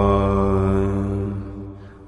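Mantra chanting holding one long, steady note over a low drone. It fades out over the last half second.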